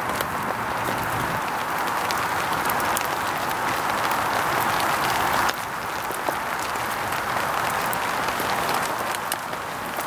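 Small wood fire of hazel sticks burning in a stick stove, crackling with frequent sharp pops over a steady hiss.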